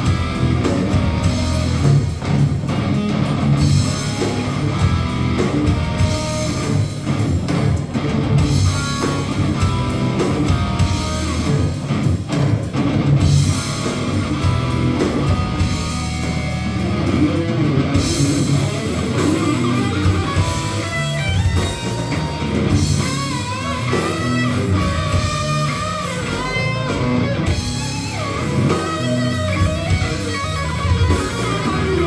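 Death metal band playing live: distorted electric guitars and drum kit, loud and dense throughout. From about twenty seconds in, a high melody line with pitch bends and wavering rises over the riffing.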